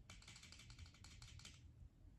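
A faint, quick run of light clicks, about a dozen a second, that stops about one and a half seconds in.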